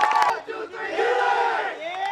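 A crowd of voices shouting and cheering together in celebration of a win. The cheer drops away briefly about half a second in, then swells again.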